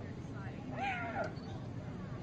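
A hyena's distress squeal: one high cry about half a second long, rising then falling in pitch, as lions hold it down.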